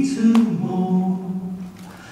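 Two men singing a folk song in harmony to acoustic guitars; a long held note fades out near the end.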